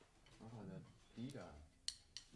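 Faint, quiet talk too low to make out, in a small room, with one sharp click near the end.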